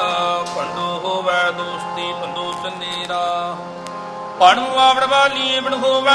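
Sikh kirtan: harmoniums playing held notes. About four and a half seconds in, a man's singing voice comes in louder, with wavering pitch.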